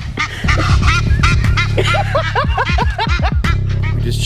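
Egyptian geese honking in rapid, repeated calls, laid over background music with a steady bass.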